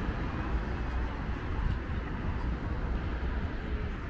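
Steady city traffic noise at a busy intersection: cars running and passing, a continuous low rumble with no single event standing out.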